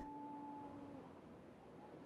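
Near silence in a gap between narration, with two faint held tones that fade out within about the first second.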